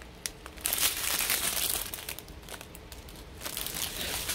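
Thin plastic bags of diamond-painting drills crinkling as a strip of sealed packets is handled and shaken. The crinkling is loudest for about a second and a half near the start, then picks up again near the end.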